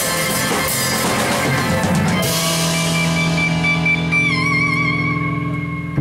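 Live rock band with drum kit, electric guitars and keyboard playing full out; about two seconds in the drums and cymbals stop and a chord is held, with a wavering vibrato note in it near the end.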